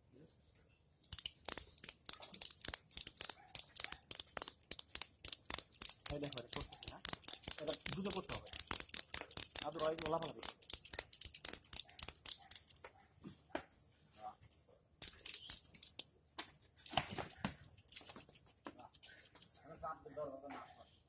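Large-animal castration bander being worked by hand to tighten the band around a young bull's scrotum. A fast, loud run of clicks starts about a second in and goes on for about twelve seconds, with shorter runs near the end.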